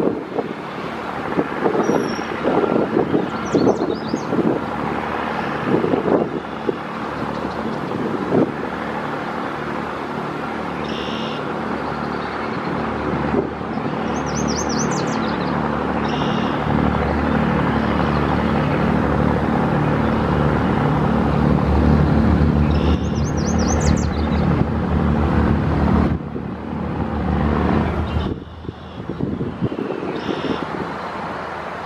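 Steady road-traffic noise with a heavy vehicle's low engine drone that grows louder through the middle and drops away suddenly near the end.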